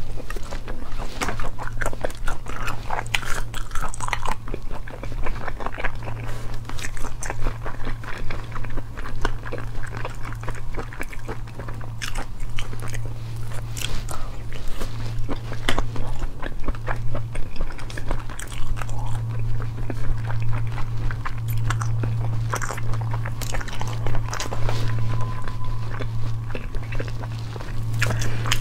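Close-up biting and chewing of cooked snail meat in chilli sauce, with many small sharp mouth clicks and smacks throughout, over a steady low hum.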